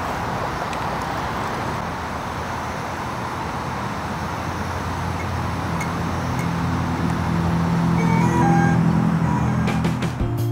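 A powered-on DJI M350 drone sitting on the ground with its cooling fans running: a steady even whir. Background music fades in over the second half and grows louder toward the end.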